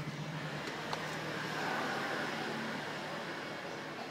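Steady background noise of road traffic, swelling a little around the middle as if a vehicle passes.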